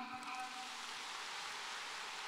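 A large audience applauding: steady, even clapping of many hands, fairly faint.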